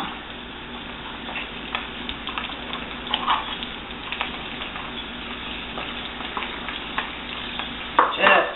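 A spoon scraping soft, thick cooking cream out of a plastic tub onto a casserole, a few light scrapes and clicks over a steady hiss.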